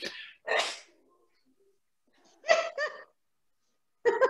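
Short breathy bursts of a person's voice, two in the first second, then a brief voiced sound about two and a half seconds in.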